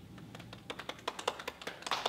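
Two people clapping by hand: a few scattered claps at first, quickening and growing louder toward the end.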